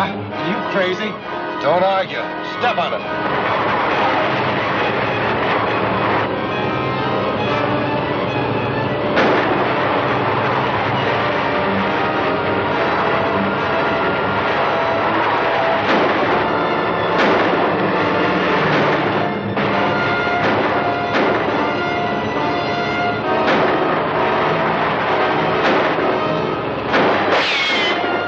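Orchestral action-serial music over a steady rushing roar, the flight sound effect of a rocket backpack in flight. It breaks off just before the end.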